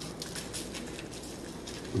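Dry barbecue rub shaken from a plastic shaker bottle, granules pattering onto the brisket and aluminium foil in a quick run of short, repeated rattles.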